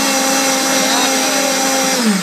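High-powered countertop blender running at full speed, pureeing mangoes and orange juice until smooth: a loud, steady motor whine over a rushing hiss.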